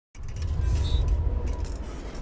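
A deep rumble that swells to about a second in and then eases off, with faint metallic jingling and creaking from the chains of a playground swing.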